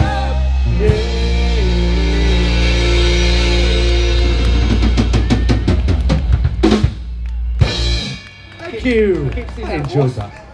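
Live rock band with drum kit, bass guitar and electric guitars playing the final bars of a song over a held bass note, with busy drum hits. The band stops about eight seconds in, and a short falling voice-like glide follows near the end.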